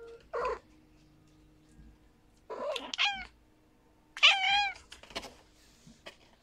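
Cat meowing: two meows with a falling end, about three and four seconds in, the second louder, among a few shorter, noisier cat sounds.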